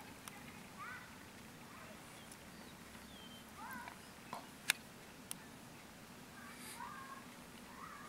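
Quiet outdoor background with a few short, upward-sliding bird chirps: one about a second in, a pair near four seconds and another near seven seconds. Two sharp clicks a little after the middle are the loudest sounds.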